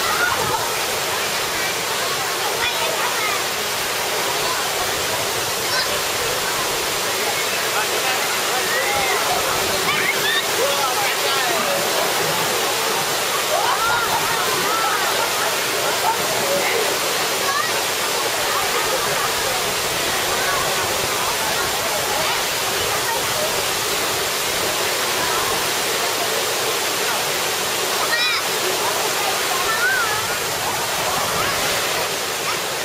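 Steady rush of water pouring down artificial rock waterfalls and water slides, with scattered distant voices calling and chattering over it.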